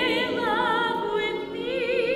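Classically trained soprano voice singing with wide vibrato, holding a note that dips in loudness about a second and a half in before she moves onto a new held note.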